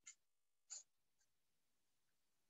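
Near silence over a video call, broken by two brief, faint hissy sounds near the start and about three-quarters of a second in.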